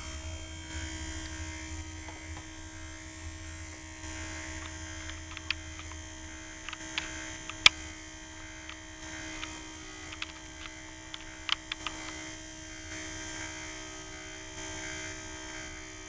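Truth Hardware Sentry II motorized window/skylight operator motor running steadily with a hum, driving the sash open on its learn cycle after a hard reset. Scattered sharp clicks sound over the run, and the lowest part of the hum drops away about six seconds in.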